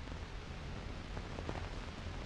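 Steady hiss with faint scattered crackles from an old optical film soundtrack.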